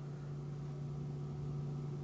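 A steady low electrical hum with faint hiss underneath, unchanging throughout.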